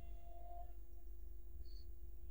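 Faint steady background hum of the recording setup, a low drone with a faint steady tone above it.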